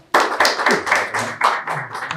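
A small group of people clapping by hand, a brisk run of claps that starts suddenly.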